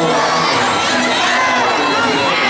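A fight crowd shouting and cheering, many voices overlapping at a steady, loud level.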